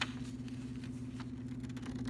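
Scissors snipping through construction paper: one sharp snip right at the start and a few faint ones after, over a steady low hum.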